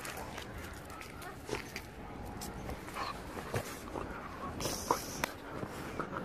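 A Podenco Orito dog giving a few short whimpers in the second half.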